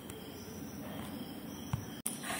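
Faint, steady background chirring of insects in a lull between speech, with a small click near the end.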